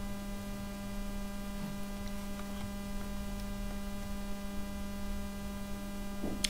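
Steady electrical mains hum in the recording, with a few faint clicks about two to three and a half seconds in.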